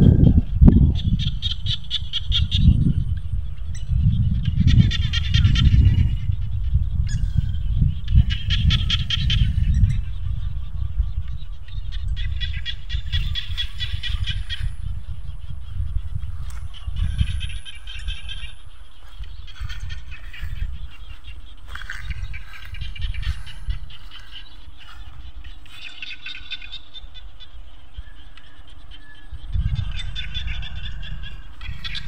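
Frogs calling from the rice paddy in rattling, pulsed bursts of about a second that recur every couple of seconds. Under them is a low wind rumble on the microphone, heaviest in the first ten seconds.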